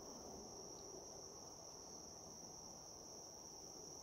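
Faint, steady, high-pitched insect trill that never breaks, over low background noise.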